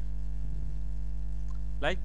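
Steady electrical mains hum, a low hum with a buzzy stack of overtones, running unchanged under the recording. A man's voice says one word near the end.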